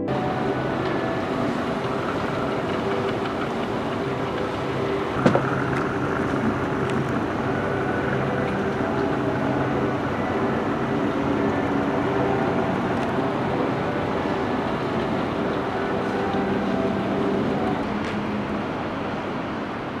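Steady, noisy background ambience with faint, steady low humming tones, and one sharp click about five seconds in.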